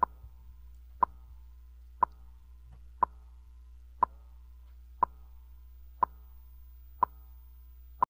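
Radio Reloj's signature clock tick: a short, sharp, pitched tick exactly once a second, nine in all, over a faint steady low hum.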